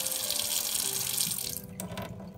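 Water from a single-lever kitchen mixer tap running into a stainless steel sink. About a second and a half in, the lever is turned down and the rush of water drops to a thin trickle.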